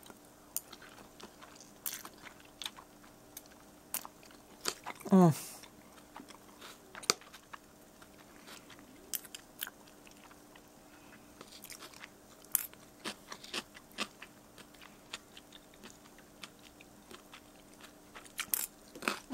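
Close-up chewing of pickle-flavoured ramen noodles with shredded carrot: a scattering of small wet clicks and crunches from the mouth, and a short hum of the voice about five seconds in. A faint steady hum runs underneath.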